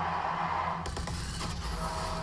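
Low background sound from a football highlights broadcast. About a second in, a sudden rush of noise with faint music comes in: the transition sound of the broadcast's quarter-break title graphic.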